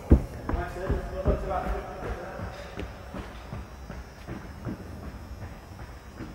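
A person's quick running footsteps on a hard floor, about four footfalls in the first second and a half as he pushes off for a drill jump, with indistinct voices over them. Then quieter shuffling and faint scuffs.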